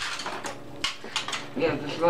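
A quick run of about five sharp metallic clinks and rattles from a thin sheet-metal panel being handled and knocked.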